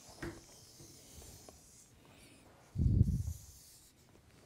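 Marker pen drawing on a foam pin board, faint light scratching for the first two seconds or so. About three seconds in, a brief, louder low thump of handling.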